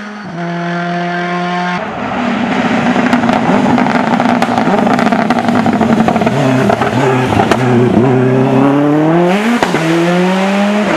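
A hillclimb race car's engine at high revs: steadier and fainter at first, then much louder from about two seconds in as the car comes close. Near the end the revs climb as it accelerates, broken by a quick dip at a gear change.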